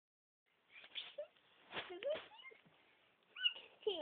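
A toddler's short, squeaky vocal sounds and babble, with a few light knocks from plastic bowls being handled.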